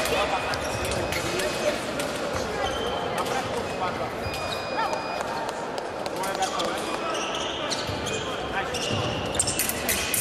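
Fencers' footwork on a piste over a sports-hall floor: a string of short thuds from stepping and stamping, with brief shoe squeaks, in a large echoing hall with indistinct voices in the background.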